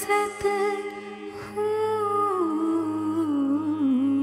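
A woman's voice humming a slow, held melody over a steady drone. Her line steps and glides downward through the second half.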